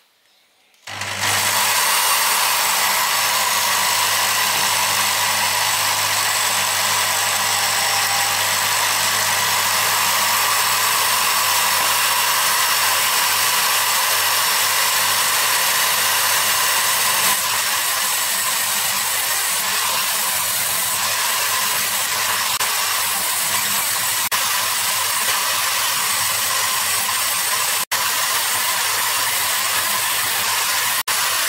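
Electric drill clamped in a vise, switched on about a second in and spinning a wire wheel brush steadily, with small metal parts of a rusty block plane held against the wheel to brush off rust.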